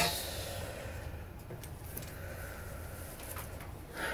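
Loose sheets of paper rustling as a conductor handles her score at the music stand, sharpest at the start and then a few faint handling ticks, over a steady low room hum.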